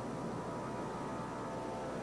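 Steady, fairly quiet engine noise from a Lockheed L-1011 TriStar's Rolls-Royce RB211 turbofans as it climbs out just after takeoff, with a faint steady whine.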